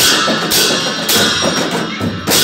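Two dhime drums, Newar double-headed barrel drums, beaten with stick and hand in a fast, steady rhythm, with a pair of large hand cymbals clashing about once a second and ringing over them.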